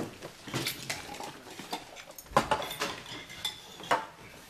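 Dishes and cutlery clattering and clinking: a string of sharp knocks, some with a short ringing, the loudest a little over two seconds in.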